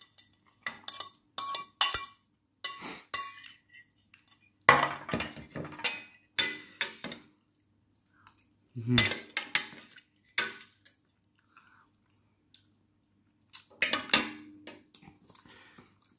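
Metal fork clinking and scraping against a plate while eating, in a run of quick light clicks at first, then denser clusters. There is a short closed-mouth 'mmh' of enjoyment about nine seconds in.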